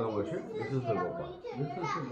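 Indistinct chatter of several voices talking over one another, among them children's voices.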